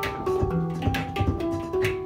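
Hang drum played in a run of ringing, overlapping notes, with beatboxed kick and snare sounds keeping a steady beat over it.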